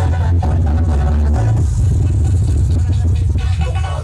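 Electronic dance music played at high volume through a parade sound system, dominated by a heavy, sustained bass that shifts note about a second and a half in.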